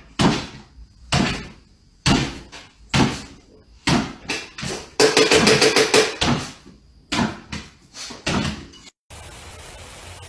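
A small dog's paws thumping on a hardwood floor as it bounces up and down on its hind legs, about once a second, with a quicker flurry of thuds midway. About a second before the end the thuds give way to the steady hiss of a lawn sprinkler spraying.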